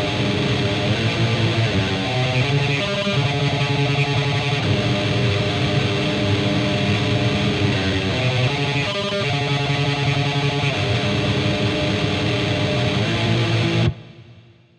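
Distorted Stratocaster-style electric guitar tremolo picking power chords on the low strings: a fast, dense, unbroken stream of notes that shifts between chord shapes, then stops abruptly at the very end.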